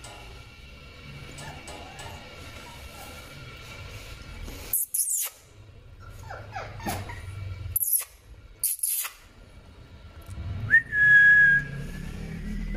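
Shiba Inu puppies whimpering: a few short wavering whines about halfway, then one louder, held, high whine near the end, over soft background music.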